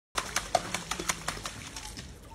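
A long feeding pole with bait on its end slapped rapidly and repeatedly onto a crocodile pool's water, splashing about five to six times a second. This is the keeper's lure to draw a saltwater crocodile up to strike.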